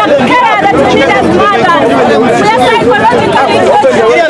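A crowd of women's voices shouting and talking over one another at close range, loud and without a break.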